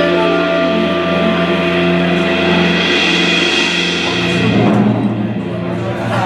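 A live jazz quartet of alto saxophone, vibraphone, double bass and drum kit holding out the closing chord of a tune, with a cymbal swell under the long sustained notes. The low note shifts about four seconds in and the chord thins out near the end.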